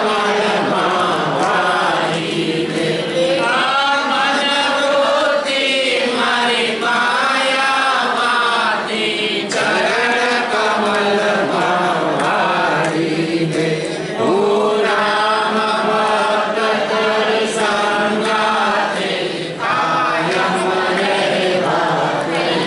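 A group of voices chanting a devotional song together in unison, in phrases a few seconds long with short breaths between them.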